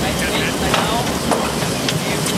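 Indistinct voices talking over a steady rushing noise.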